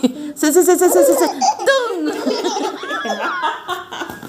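A baby laughing: a quick run of short laughs about half a second in, then more drawn-out giggling and squeals.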